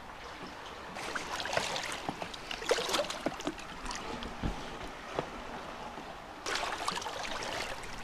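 Shallow seawater splashing and sloshing in irregular bursts as someone wades through it.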